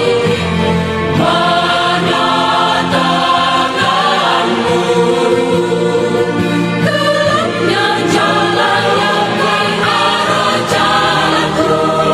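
Choir singing a Christian worship song, holding chords that change about every second.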